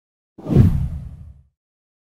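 A deep whoosh transition sound effect that swells about half a second in and fades away within a second.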